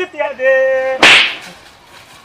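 A man's drawn-out sung "oho" note, cut off about a second in by one loud, sharp slap to the face that fades within half a second.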